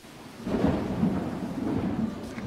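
A loud rolling rumble of thunder that starts about half a second in and goes on unbroken.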